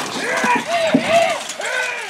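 Voices shouting short calls that rise and fall in pitch, several in a row, with a sharp knock about a second in.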